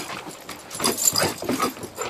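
Two dogs playing, with a few short pitched dog calls about halfway through.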